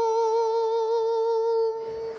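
A male singer holding one long, high sung note with an even vibrato, which dies away near the end.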